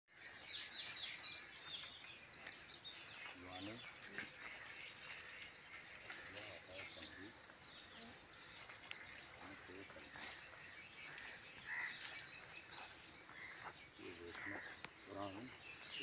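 A chorus of small birds chirping in quick, repeated short high notes, with faint voices now and then.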